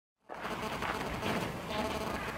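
Outdoor background noise fading in just after the start, a steady faint hum with no single clear event.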